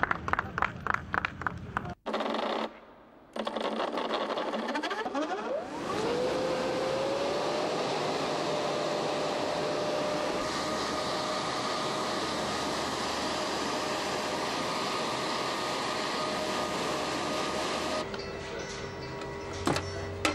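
Electric drive motor of a solar race car whining as it sets off: the pitch rises over about a second and then holds a steady tone for roughly ten seconds.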